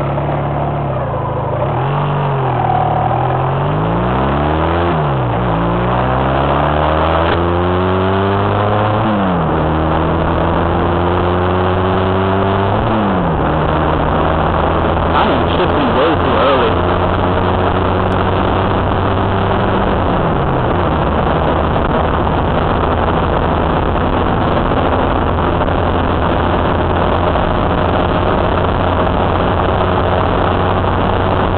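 Honda Rebel 250 motorcycle engine accelerating up through the gears. The pitch rises and drops at each shift, three times in the first dozen seconds, then holds steady at cruising speed. It falls away about twenty seconds in and settles again, under a constant rush of wind noise.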